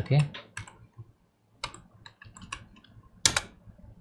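Computer keyboard keystrokes: a few separate clicks of typing, then one louder keystroke a little past three seconds in.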